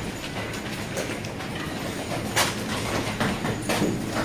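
A steady mechanical hum over a rushing rumble, with a few faint knocks and scuffs.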